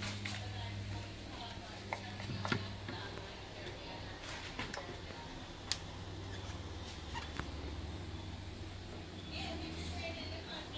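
Metal spoon scraping thick peanut butter from a plastic food processor bowl into a glass jar: soft scraping with a few sharp clicks of spoon on bowl and jar, over a steady low hum.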